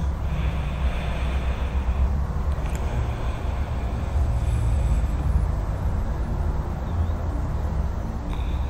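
Steady low rumble of distant road traffic.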